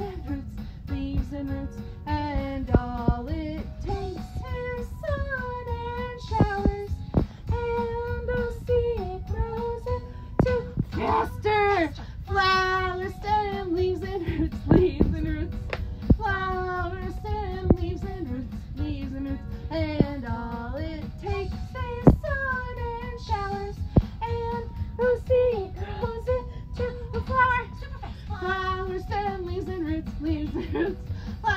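A recorded children's song, sung by children's voices over a musical backing with sharp percussive hits.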